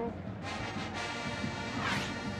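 Brass music: a chord held steadily from about half a second in.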